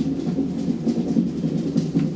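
ASEA Graham traction elevator car travelling in the shaft, giving a steady low rumbling hum.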